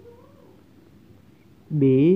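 A faint, short call that rises and then falls, near the start. About three-quarters of the way in, a man's voice starts speaking loudly.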